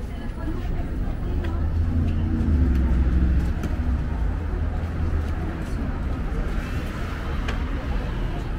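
Outdoor street ambience: a low traffic rumble that swells to its loudest about two to three seconds in and then eases, with people talking nearby.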